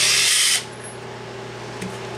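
Cordless drill spinning a bolt-end deburring tool against the sawn-off end of a 5/16-inch bolt, grinding off the burrs so the threads take a nut cleanly. The grinding stops suddenly about half a second in.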